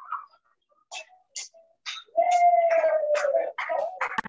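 A dog whining: a few short sharp sounds, then one long, slightly falling whine lasting about a second and a half.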